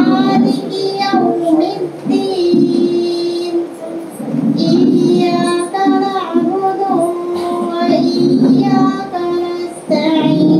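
A girl singing a melody solo into a handheld microphone, holding each note.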